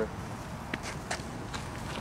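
Footsteps of a person walking on a concrete sidewalk, with a few sharper steps or scuffs about a second in, over low street background noise.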